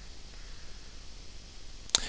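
Room noise: a faint steady hiss, with one sharp click near the end.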